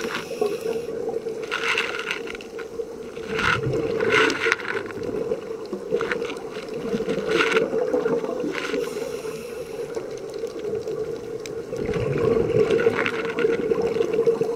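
Underwater scuba-dive sound heard through a camera housing: bursts of exhaled bubbles from a regulator every couple of seconds, over a steady hum.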